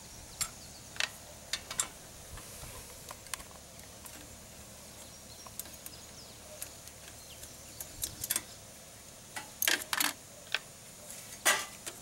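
Ratchet wrench with a socket clicking in short, irregular bursts, with metal tool clinks, as bolts are worked loose on a small engine's sheet-metal shroud.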